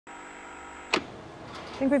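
Analog TV static: a steady hiss with a thin high whine, cut off by a sharp click about a second in, then fainter hiss.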